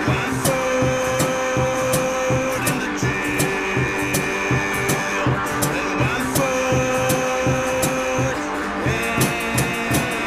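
Instrumental break of a band song: long held lead notes over a steady beat of about two strokes a second, with no singing.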